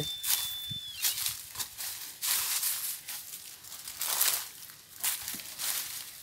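Dry leaf litter rustling and crunching in irregular bursts as it is brushed aside by hand and trodden on. A thin steady high tone stops about a second in.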